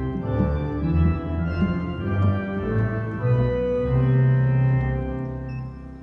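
Three-manual church organ played in the key of C: pedal bass notes step along under a left-hand part on the lower manual, then settle into a held chord that dies away near the end.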